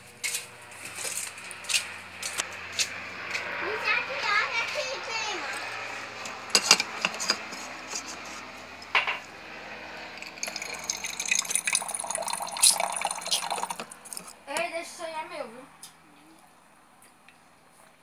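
Water running into an aluminium cup, with clinks and knocks of the cup against other things, and a couple of brief children's voices.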